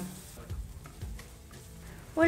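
Chopped onion and green chillies sizzling faintly in a nonstick frying pan as a spatula stirs them, with a few light clicks of the spatula against the pan.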